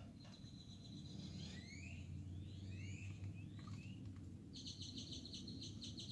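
Faint birdsong: a run of short rising chirps through the middle, with a high steady trill at the start and again near the end, over a low steady hum.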